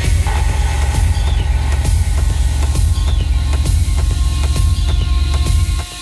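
Techno music from a DJ set: a loud, steady low bass rumble under a thin sustained high tone and fast ticking percussion. The bass drops out briefly just before the end.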